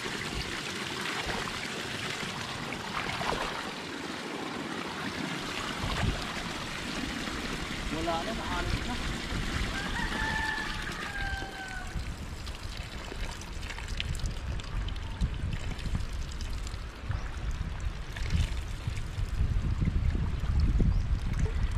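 Pond water spilling steadily through a gap in an earthen fishpond dike and splashing into a muddy channel, with a low rumble joining about six seconds in.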